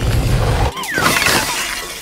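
Cartoon sound effect of ice shattering: a low rumble for about the first half-second, then a long, high crackling crash of breaking pieces.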